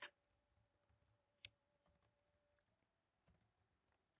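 Near silence broken by a few faint, short clicks of a computer keyboard and mouse while code is edited. The clearest is about a second and a half in, another comes right at the start, and a very faint one follows about three seconds in.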